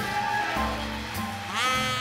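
Big band playing a swing jazz instrumental passage, with brass and reeds together. About one and a half seconds in, a horn slides up into a long held high note.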